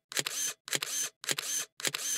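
Camera shutter sound effect, repeated in a steady series of about two shutter sounds a second.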